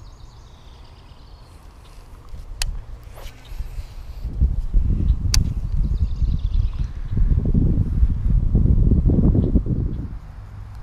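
Wind buffeting the microphone outdoors: a low, gusting rumble that comes in about four seconds in and stays loud. Two sharp clicks stand out, one a little before the rumble starts and one just after.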